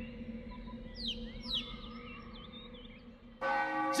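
A few faint, quick chirps over a steady low ringing drone, then a temple bell struck near the end, its clear tones ringing on.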